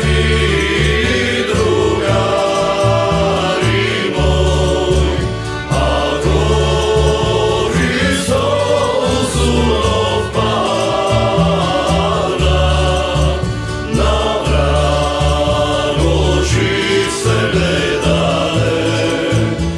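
Macedonian old-town (starogradska) song played by a small ensemble of violin, rhythm and solo guitars, double bass and accordion, with voices singing together over a steady, repeating bass line.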